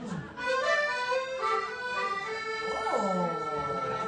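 Piano accordion playing held notes and chords, the notes changing in steps. About three seconds in, a voice slides briefly down in pitch over it.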